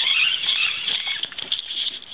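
Fishing reel's drag paying out line as a hooked amberjack runs: a loud, rapid, high-pitched buzz of fine ticks that thins near the end.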